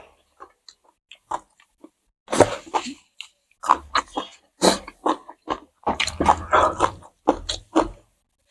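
Close-miked chewing of food eaten by hand: faint ticks for the first two seconds, then busy, wet chewing in quick clusters for the rest.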